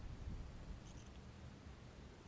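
Faint outdoor background: a low steady rumble, with a few faint high ticks about a second in.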